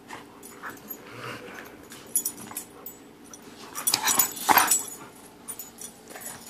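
Two dogs, a blue pit bull and a white-and-black dog, play-wrestling: low growls, snuffles and scuffling, with a louder burst of scuffling about four seconds in.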